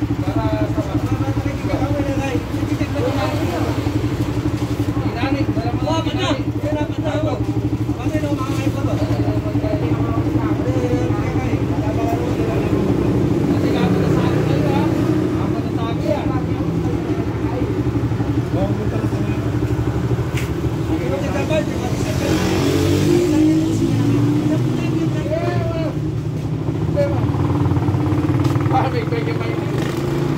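An engine running steadily, with indistinct voices talking in the background.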